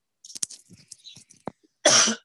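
A man coughs once, a short loud cough near the end, after a second or so of faint small clicks.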